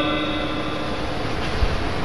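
A man's drawn-out last syllable fades out in the first moment, then steady background noise: an even hiss with a low hum and no distinct events.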